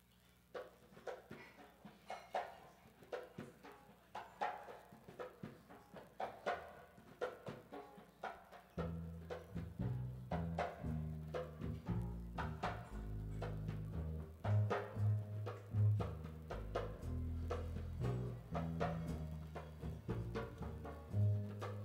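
Instrumental intro by a small jazz combo: a drum-kit pattern of sharp strikes, joined about nine seconds in by a walking upright bass line.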